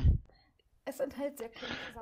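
Speech: a voice ends at the very start, then after a short gap a fainter, whispery voice.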